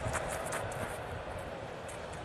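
Steady ballpark background noise under a baseball TV broadcast, an even crowd-like hiss, with a few faint clicks in the first half second.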